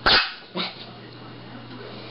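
A small dog barking in play: one loud, sharp bark, then a shorter, quieter one about half a second later.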